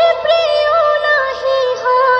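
A high voice singing a Bangla Islamic gojol, holding notes that step up and down in pitch, with no drums or bass.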